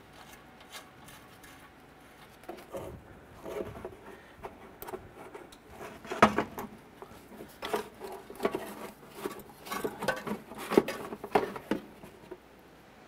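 Irregular light clicks, taps and rubbing from gloved hands handling parts and wiring in a car's engine bay, starting a couple of seconds in, with sharper knocks about six seconds in and again near the end.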